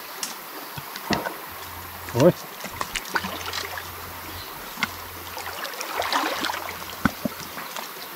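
Shallow stream water sloshing and splashing around a man lying in it and groping under the bank with his arms, with scattered small clicks and knocks. The water noise gets busier about six seconds in.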